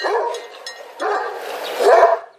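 Kangal shepherd dog barking: a short call at the start, then a longer one through the second half.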